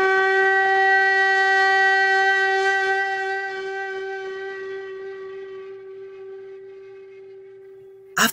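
One long held note on a wind instrument, steady in pitch, slowly fading away.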